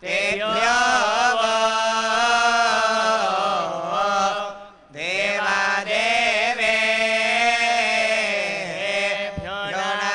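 Vedic recitation (Veda parayanam) chanted by male priests through a microphone, with long held notes and slow rises and falls in pitch. There is a short break about halfway.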